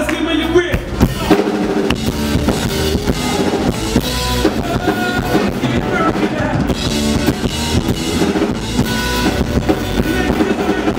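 Live rock band playing, with the drum kit to the fore: steady kick drum and snare hits over electric bass.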